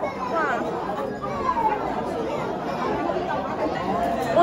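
Background chatter: several people's voices talking at once over a steady murmur.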